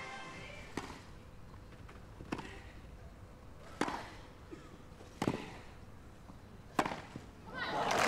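Tennis rally: a ball struck back and forth by rackets, five sharp hits about a second and a half apart, then crowd applause swelling near the end as the point is won.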